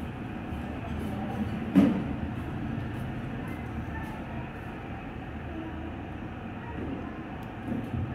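Steady low rumble of a moving vehicle, heard from inside, with one sharp knock about two seconds in.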